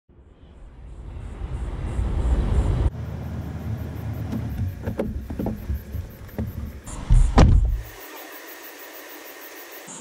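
Handling noise of a GoPro camera being gripped and set in place: a low rubbing rumble with scattered knocks, the loudest bump about seven seconds in, then it goes much quieter.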